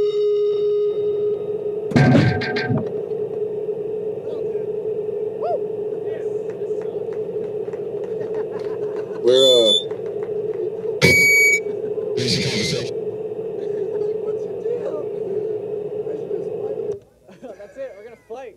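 A live band's amplified instruments hold one steady droning note, broken by a few sharp hits, short noise bursts and a warbling pitch glide about halfway through. The note cuts off suddenly about a second before the end.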